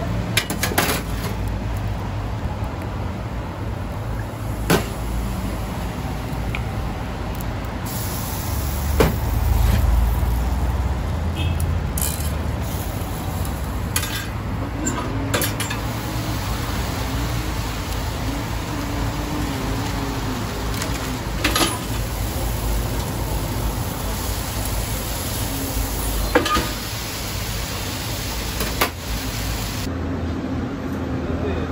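Metal spatula and knife clinking and knocking against the steel plates of a commercial contact grill during toast-making, about ten sharp scattered clinks over a steady kitchen and street background.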